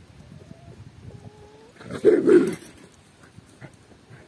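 A Kangal shepherd dog barks once, a short, deep bark about two seconds in that lasts about half a second. A few faint, thin whine-like tones come just before it.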